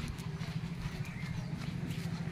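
Footsteps of a person walking over a yard's ground, irregular soft steps over a steady low rumble.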